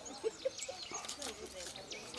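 Birds chirping outdoors, a busy run of many short, quick calls, with faint voices murmuring underneath.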